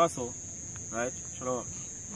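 Crickets chirping in a steady, high-pitched chorus, broken by a few short spoken syllables from a man's voice.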